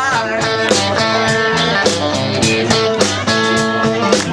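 Live blues-rock band playing an instrumental passage: electric guitar lines over bass guitar and a drum kit, with cymbal hits on a steady beat and no singing.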